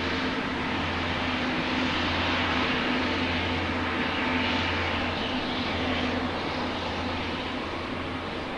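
Rolls-Royce Trent XWB turbofan engines of an Airbus A350-1000 running as the jet rolls onto the runway: a steady jet rush with a few held tones that eases slightly near the end.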